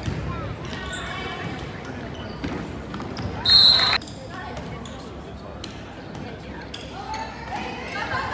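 Sounds of a volleyball rally in a school gymnasium: the ball being struck and players' and spectators' voices. About three and a half seconds in comes a short, steady, high-pitched blast, the loudest sound, typical of a referee's whistle ending the rally.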